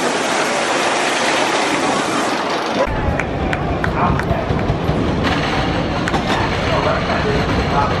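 Great Coasters International wooden roller coaster train running on its track, a loud rushing roar; about three seconds in it gives way to a deeper rumble with a few sharp clicks, with people's voices mixed in.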